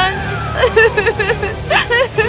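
A woman's voice sobbing in short repeated catches, over a steady low rumble of wind.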